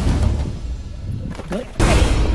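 Background music with a heavy bass, then a sudden loud blast-like hit near the end: an impact sound effect laid over the fight action.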